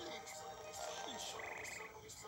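Faint film soundtrack played through a TV speaker: a character's croaky grunts and muttered "hmm" and "sheesh", with music underneath.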